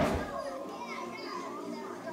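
Children's voices and chatter over background music, beginning with a sudden loud burst of sound right at the start.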